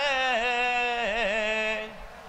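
A man's solo voice singing one long, drawn-out note of a devotional Urdu verse in praise of Maula. About a second in, the pitch wavers in an ornament, and the note fades out just before the end.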